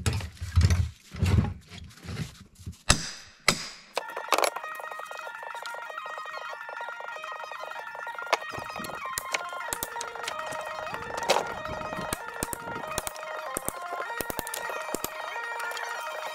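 Wooden boards knocking and clattering as scrap lumber is handled and pried apart, with several heavy thumps in the first few seconds. About four seconds in, background music comes in, with sharp clicks and knocks from the work scattered over it.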